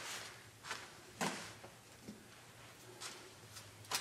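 A few faint, scattered clicks and knocks of small objects being handled at the workbench, over quiet room tone.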